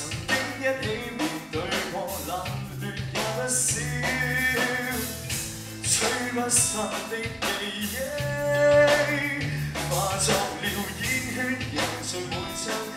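A rock band playing live: electric guitars, bass guitar and a drum kit keeping a steady beat, with a singer.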